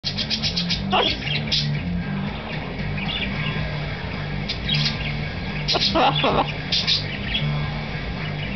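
Background music with a shifting bass line. Over it, a blue-and-gold macaw gives several short chirps.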